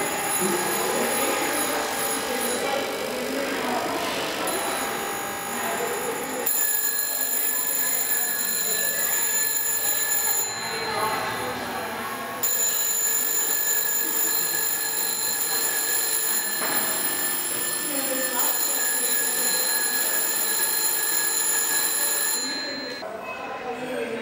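Old telephone bells ringing in long continuous stretches, breaking off for about two seconds near the middle and stopping shortly before the end. People are talking underneath.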